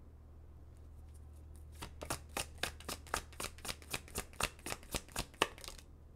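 Tarot deck being shuffled by hand: a run of quick card slaps, about four a second, starting about two seconds in and stopping shortly before the end.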